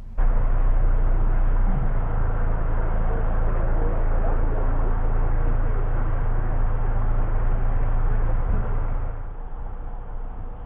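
Narrowboat's diesel engine running with a steady low rumble as the boat moves out of the lock. There is a brief rise in pitch about two seconds in, and the sound drops away about nine seconds in.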